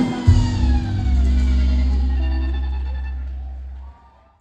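A live band's closing chord, with deep bass and electric guitar, struck about a quarter second in and held ringing. It slowly fades, its upper tones sliding slightly down in pitch, then cuts off abruptly near the end.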